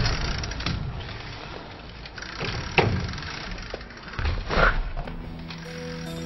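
BMX bike riding on concrete skatepark ramps: tyres rolling, with a sharp knock of a landing or impact near the middle and another louder bump a little later. Music with plucked guitar notes comes back in near the end.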